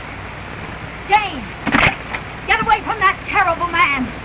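Speech: a person's voice, heard in short phrases over the steady hiss of an old film soundtrack.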